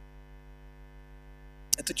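Steady electrical mains hum from the microphone and sound system, a low drone with a slight regular throb. A man's voice starts a word near the end.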